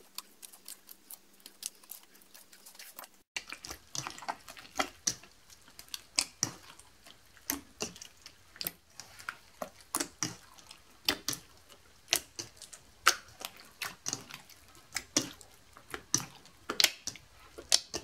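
Clear slime made from glue and boric acid activator squelching and popping wetly as hands knead it in a steel bowl with liquid. The pops are irregular, sparse and faint at first, then come thick and fast from about three seconds in. The slime is still forming, a little sticky as the activator is worked in.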